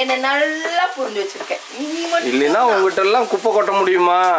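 Food sizzling in a frying pan as it is stirred with a spatula, under a woman's voice.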